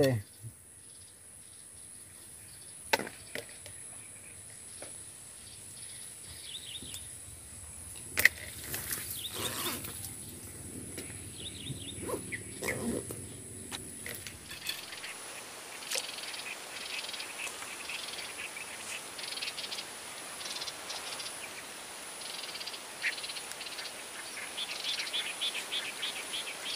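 Swamp-side insects: a steady high-pitched insect whine through the first half, broken by a few sharp clicks. After a cut about halfway, insects chirping in quick repeated calls fill the rest.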